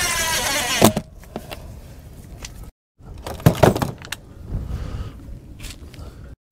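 A porthole window frame being pushed and worked into its opening in a wooden boat's hull: a loud scrape with a squeak in the first second, then knocks and clatter, with two abrupt breaks where the sound cuts out completely.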